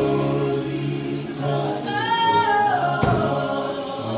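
A small gospel choir of four voices singing in harmony over keyboard accompaniment, with a held note that swells and then slides down about halfway through.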